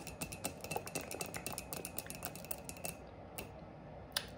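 Long false nails tapping quickly on a ceramic coffee mug: a rapid run of light clicks that stops about three seconds in.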